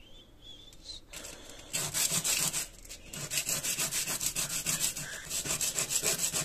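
A hardened tofu blade being sharpened by rubbing it back and forth on fine sandpaper: rapid, even scraping strokes that start about two seconds in, pause briefly, then carry on.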